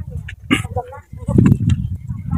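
A small dog yipping briefly, with people talking in the background.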